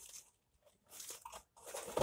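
Faint crinkling and rustling of plastic packaging as it is handled, in a few short spells with a near-silent gap about half a second in.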